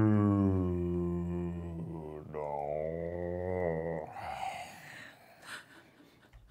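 A low voice holding a long, drawn-out hum-like tone that sinks slowly in pitch, then a second long tone sliding down about two seconds in; after about four seconds only faint breathy sounds remain.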